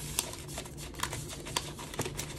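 A paper receipt being folded and handled by hand: soft paper rustling with a few light clicks.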